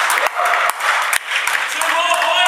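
Players' voices shouting and hands clapping in a large sports hall, mixed with sharp knocks of the ball and feet on the wooden floor during a futsal match.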